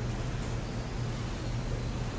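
A steady low hum with a slight pulsing, under faint background noise, and a small click about half a second in.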